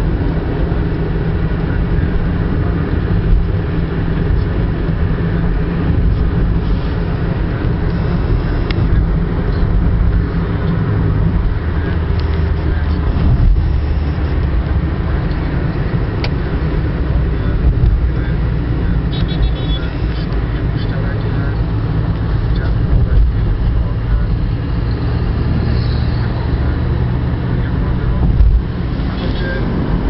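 Car cabin noise at highway speed: a steady low rumble of engine and tyres on the road, heard from inside the car, with the engine hum shifting in pitch a couple of times as the car changes speed.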